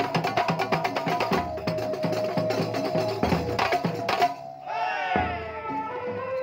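Kuntulan procession band playing: a fast, dense beat on frame drums with a melodica holding long notes over it. The drumming breaks off briefly just past four seconds, where a falling, wavering pitched sound is heard, then comes back in more lightly.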